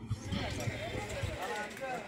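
Faint outdoor crowd ambience: distant voices talking over a low background hum, with a few faint clicks.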